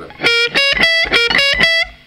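Distorted Fender Stratocaster electric guitar playing a sweep-picked arpeggio of about six notes outlining B, D and F, as written in the second bar of a transcription. The notes start just after the beginning and are cut off abruptly near the end.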